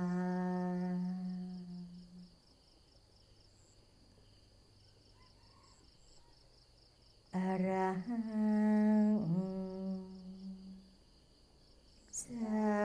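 A single voice humming a slow mantra chant melody. It holds one long low note that fades out about two seconds in, then after a pause of about five seconds it sings a second phrase with sliding pitch, which trails off near the end.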